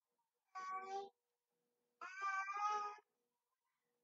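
Two short, high-pitched vocal calls, one about half a second long and then a second one about a second long, heard over a video-call audio link.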